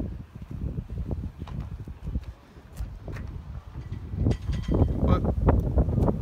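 Wind buffeting the microphone: an uneven, gusty low rumble, with a few faint knocks a little after the middle.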